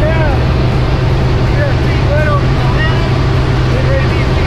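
Steady drone of a small single-engine propeller plane heard from inside its cabin, with wind rushing through; voices rise and fall over it.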